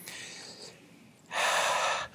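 A man drawing breath close to a handheld microphone: a faint breath at the start, then a short, louder intake of air near the end, just before he speaks again.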